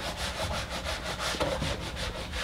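Whiteboard eraser rubbed back and forth over a whiteboard in quick repeated strokes, wiping off marker writing.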